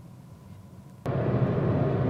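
Quiet car-cabin room tone for about a second, then an abrupt jump to the steady road and wind noise inside a VW e-Up! electric car driving on a motorway, a low rumble with a hiss over it and no engine note.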